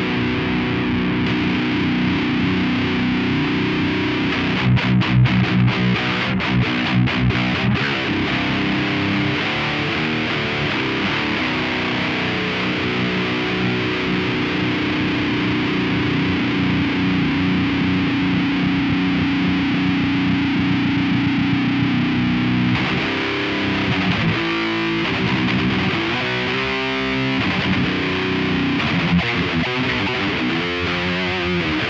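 Distorted electric guitar through a Void Manufacturing / Lone Wolf Audio Leaded Answer pedal, used as an overdrive into a Kemper profile of a Mesa Boogie Rev F Dual Rectifier with a Marshall MF400 cab miked by an SM57, playing heavy metal riffs. Ringing chords give way to a burst of fast picked chugs about five seconds in, then a long held chord, then short stabbing chords near the end. The pedal's knobs are adjusted while it plays.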